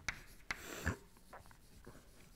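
Chalk writing on a chalkboard: sharp taps as the chalk meets the board, then a scratchy stroke about half a second in, followed by fainter small ticks.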